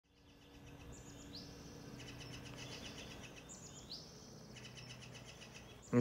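Faint birdsong: a short phrase ending in a rising whistle, sung twice about two and a half seconds apart, among other chirps and trills, over a faint low steady hum.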